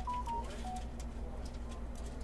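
Faint steady low hum with a few short, single-pitch beeps at different pitches in the first second, and light clicks.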